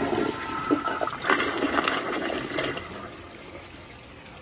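American Standard Glenwall toilet flushing a shop rag down: water rushes through the bowl and drain for about three seconds, then dies down to a quiet trickle. The rag clears the drain and the test is passed.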